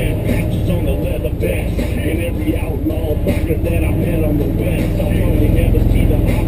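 Off-road vehicle engine running steadily as it drives, with a song with vocals playing over it.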